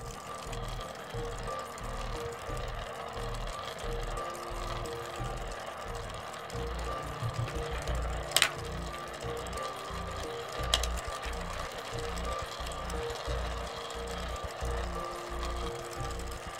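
Background music over a continuous rattle of a spinning LEGO top and small balls rolling and jostling on a glass concave mirror, with two sharp clicks about halfway through and a few seconds later, the first being the loudest.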